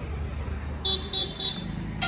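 A horn gives three short toots in quick succession about a second in, over a low steady rumble.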